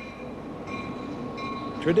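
Diesel locomotive rolling past, its rumble growing steadily louder as it comes closer, with thin high squealing tones coming and going over it.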